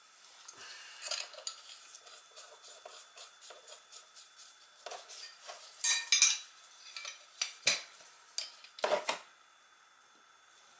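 Small metal parts of an oil burner's nozzle and electrode assembly clinking and rattling as they are handled and wiped, with the sharpest knocks about six seconds in and twice more near the end.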